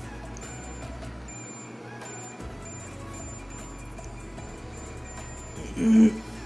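Quiet background music over a low electrical hum from a coil-driven hair clipper. About a second in, the hum cuts out for roughly a second as the power cord is flexed: an intermittent connection from a broken wire at a bend in the cord.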